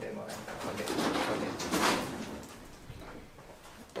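Scuffling and light rattling as a chinchilla is caught and lifted out of a wire-mesh cage, dying away over the last second or so.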